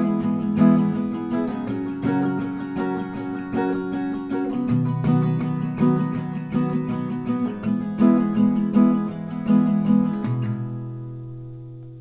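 Steel-string acoustic guitar with a capo on the fourth fret, strumming a chord progression in a steady rhythm and changing chord a few times. The last chord, struck about ten seconds in, is left to ring and fade.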